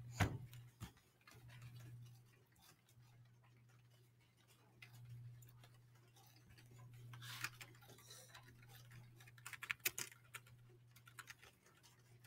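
Faint low hum with scattered light clicks and taps: a sharp knock just after the start, a short hiss past the middle, and a quick run of clicks near the end.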